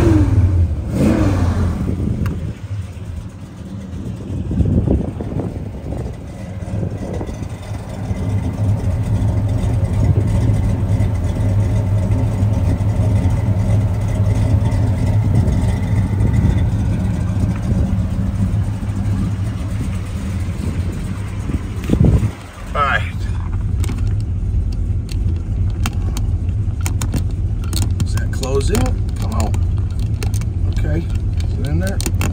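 The 502 cubic-inch big-block V8 of a 1972 Chevrolet Chevelle idling steadily through upgraded headers and dual exhaust. About 22 seconds in, the sound breaks briefly; the engine is then heard from the moving car.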